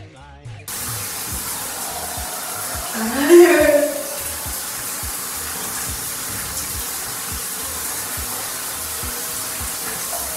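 Shower water pouring steadily from an overhead rain showerhead, a constant hiss that starts abruptly about a second in. Around three seconds in, a short rising vocal sound from the woman is heard over the water.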